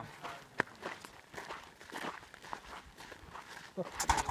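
Footsteps of people walking on sandy ground: a few short, uneven steps, with faint voices.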